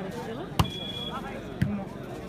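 Volleyball struck by hand during a rally: two sharp smacks about a second apart, the first the louder, over the steady chatter of the watching crowd.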